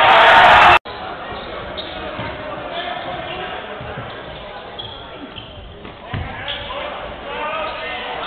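Indoor basketball game sound: a ball bouncing on the court amid voices and crowd noise echoing in a large hall. It opens with a short, loud burst of crowd noise that cuts off abruptly under a second in.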